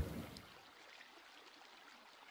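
A man's voice trails off in the first half-second. After that there is only a faint, steady background hiss.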